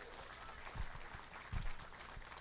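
Faint background ambience of an outdoor gathering in a pause between spoken sentences, with two soft low thumps, about a second and a second and a half in.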